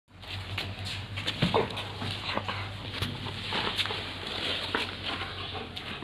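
A Labrador retriever playing tug-of-war with a cloth: the dog's play noises, with the fabric rustling in a run of short scuffs and clicks.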